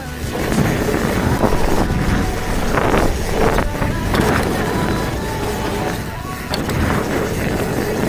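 Mountain bike rolling fast down a packed dirt trail: continuous tyre rumble with knocks and rattles of the bike as it hits bumps.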